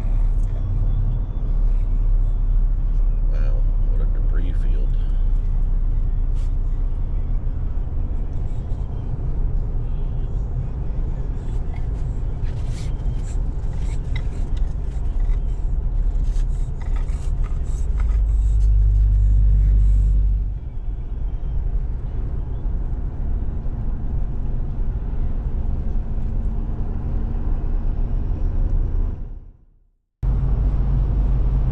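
Steady low road and engine rumble heard inside a Ford Super Duty pickup's cab at highway speed. It swells louder for a couple of seconds about two-thirds of the way in, then fades out at the end.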